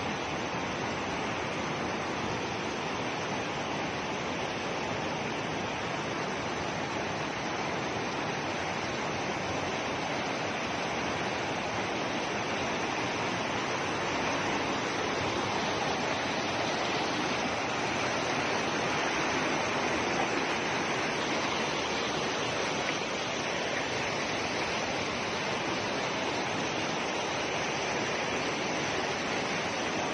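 Muddy floodwater rushing steadily down a village street, a constant roar of moving water that swells slightly past the middle.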